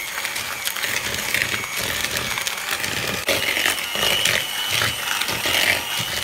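Electric hand mixer running, its beaters creaming margarine and caster sugar in a bowl: a steady motor whine that steps up in pitch about three seconds in, with the beaters knocking against the bowl.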